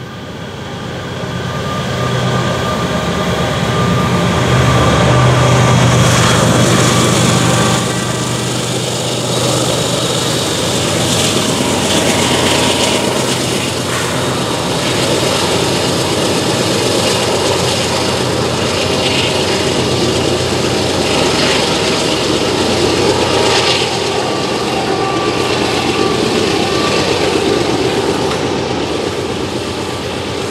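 Canadian Pacific GE diesel-electric locomotives hauling a loaded coal train, their engines droning loudest over the first several seconds as they come close. This gives way to the steady rumble of the loaded coal cars rolling past on the rails.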